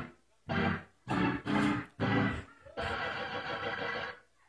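A man's short wordless shouts into a handheld microphone, four quick ones in about two seconds. They are followed from a little before the end by a steady held chord of several tones.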